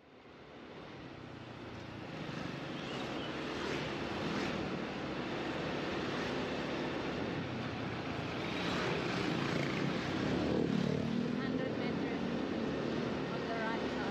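Road traffic heard from a moving motor scooter: a steady engine drone with road and wind noise, fading in over the first couple of seconds.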